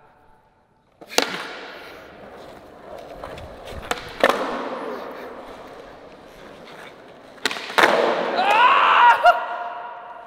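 Skateboard on a concrete floor: sharp echoing cracks of the board popping and landing, about a second in, twice close together around four seconds, and again around seven and a half seconds, each followed by the rolling of the wheels on concrete. A voice calls out near the end.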